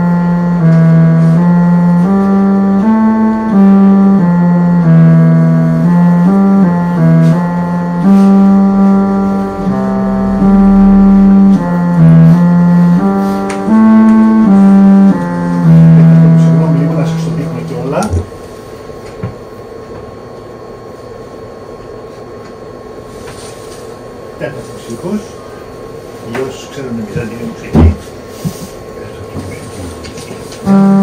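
Electronic instrument built for Byzantine chant, playing a melody in the fourth mode (Echos Tetartos) as a line of held notes that step up and down. About eighteen seconds in it stops, leaving a quiet room with a few clicks.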